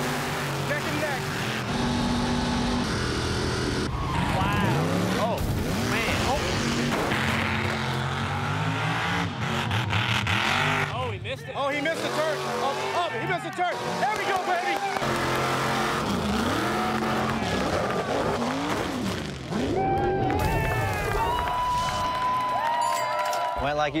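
Mega truck engines revving hard in a race, their pitch rising and falling again and again through the throttle, with voices mixed in.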